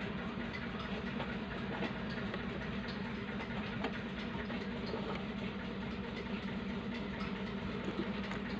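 A steady low hum over even background noise, with a few faint small clicks.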